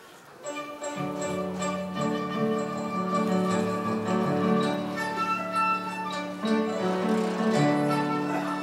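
Chinese instrumental music starting up: guzheng zither plucked and a dizi bamboo flute playing over a low, held keyboard note. It begins about half a second in, and the low note enters about a second in.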